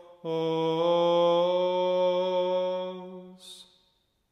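Male voices singing Orthodox liturgical chant, one long melismatic phrase held on sustained notes with small steps in pitch. The phrase fades out near the end, followed by a brief hissed consonant.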